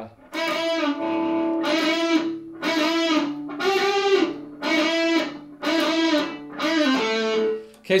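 Gibson Les Paul electric guitar playing a slow lead phrase of single sustained notes, about seven in all, roughly one a second, with one note bent up and back about halfway through.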